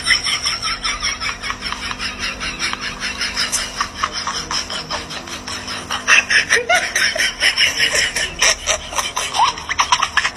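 Laughter, most likely dubbed over the footage: a long unbroken run of quick, high-pitched laughing bursts, several a second, louder from about six seconds in, over a faint steady hum.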